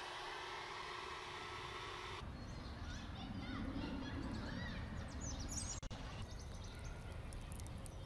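Toro electric leaf blower running steadily, cutting off about two seconds in. After that, birds chirping over a low rumble.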